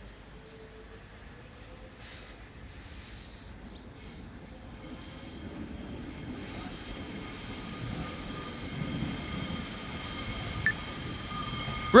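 Class 142 Pacer diesel multiple unit approaching, its rumble growing steadily louder as it nears. A thin, steady high-pitched squeal from the wheels on the rails joins in about five seconds in.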